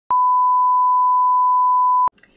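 TV test-card reference tone: one steady, pure, high beep held for about two seconds, starting and stopping abruptly.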